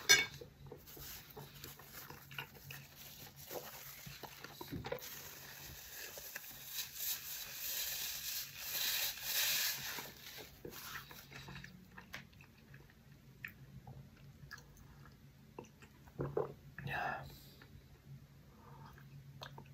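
Eating sounds of a man at his noodles: a sharp click at the start, chewing, then a paper napkin rustling for several seconds in the middle as he wipes his mouth. Near the end come louder sips or gulps as he drinks from a mug.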